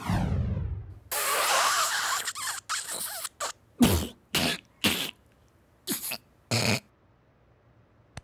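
A falling swoosh, then a long breathy drag on a blunt followed by a fit of about nine harsh coughs, spaced unevenly, that stops about a second before the end.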